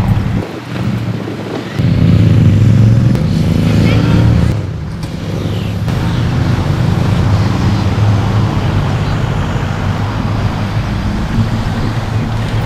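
Engine of the vintage Standard railcar RM 31 running as the railcar moves slowly along the track, loudest a couple of seconds in, then a little quieter and steady.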